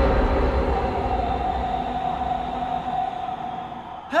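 A steady mechanical rumble with a constant whine above it, which slowly fades.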